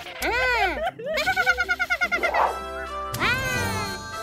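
Cartoon character voices: high, sped-up gibberish exclamations, each gliding up then down in pitch, over light children's background music.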